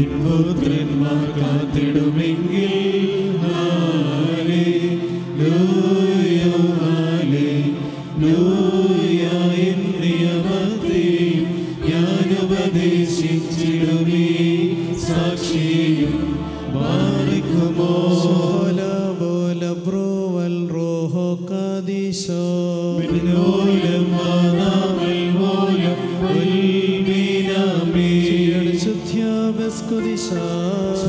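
A man's voice chanting a Syriac liturgical hymn of the evening prayer in long, sustained, melismatic phrases, carried over a microphone and the church's PA.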